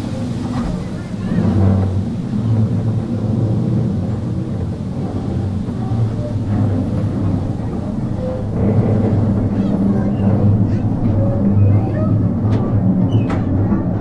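Mine-train ride cars rolling along their track with a steady low rumble, which grows louder about two-thirds of the way through as the train enters a rock tunnel. A few sharp clicks come near the end.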